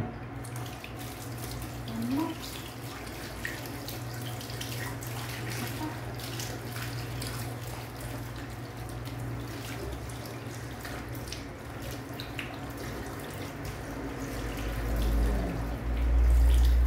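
A mixer tap runs into a bathroom sink, turned on at the start, its stream splashing over a dog's wet coat and the hands rinsing it. A low rumble swells near the end.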